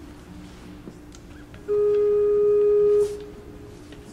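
A single sustained organ note, held steady for just over a second and cut off cleanly, sounding the pitch for the chorale about to be sung.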